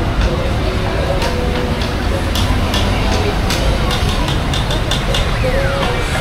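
Busy city street ambience: a steady low rumble of vehicle engines and traffic under people talking in the background, with a run of short sharp clicks in the middle.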